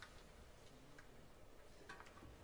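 Near silence in the concert hall: faint room tone with a few soft, isolated clicks, one at the start, one about a second in and one near the end.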